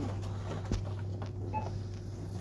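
Steady low electrical hum of a store interior, with a sharp click a little past the middle and a short electronic beep later on.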